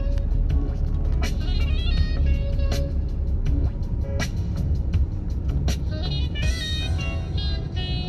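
Car driving at night, a steady low road-and-engine rumble inside the cabin, with music playing over it and a regular sharp tick about every second or less.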